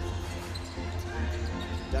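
Basketball bouncing on a hardwood court during live play, over a steady low background hum in the arena.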